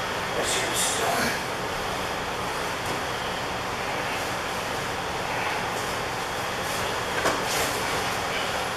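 Steady rushing background noise, with a few brief scuffs and rustles from two grapplers shifting on the mats, shortly after the start and again near the end.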